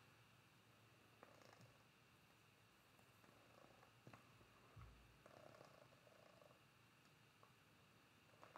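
Near silence: room tone with faint handling sounds as fabric triangles are moved on a pressing board, a few soft clicks and a short low thump about halfway through.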